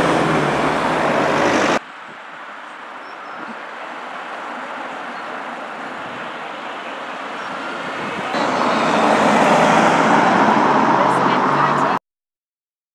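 Road traffic noise passing by, an even rushing hum with a vehicle's engine showing as a low drone. It drops suddenly to a quieter stretch about two seconds in, swells again about eight seconds in, and cuts off abruptly at the end.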